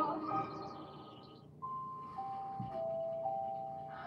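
Music from a television in the background: the earlier passage fades out, then a few long held notes step down in pitch from about halfway through.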